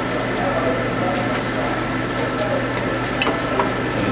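A 1902 belt-driven shaper, built with a belt-shifting 'jumping belt' reversing mechanism, running and planing a small piece of cold-rolled steel: a steady mechanical hum and hiss, with a few light clicks near the end.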